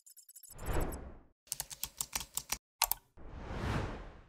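Designed sound effects for an animated logo reveal: a whoosh about half a second in, a quick run of sharp typing-like clicks, a single sharp hit, then a second whoosh that swells and fades near the end.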